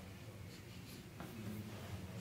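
Faint scratchy rubbing and a couple of small clicks as a small plastic smelling-salts bottle is handled and its cap twisted open.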